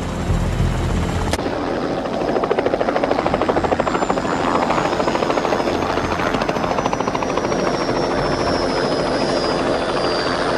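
Bell 206 JetRanger helicopter flying low: a fast, even rotor-blade chop with a high turbine whine that slowly falls in pitch. It follows a deeper rumble that cuts off about a second and a half in.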